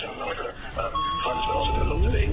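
Electronic two-tone chime: a higher note about a second in, then a lower note held to the end, over background voices. A low rumble builds near the end.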